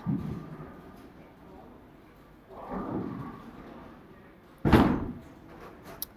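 Heavy bowling ball being turned and set on a ball surface scanner: a faint rubbing partway through, then a single thud about three-quarters of the way in.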